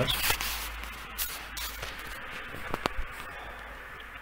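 Steady hiss with faint rustling and a few small clicks, two of them close together near the three-second mark.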